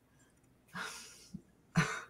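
A woman's breathy exhale, fading out, then a short cough near the end.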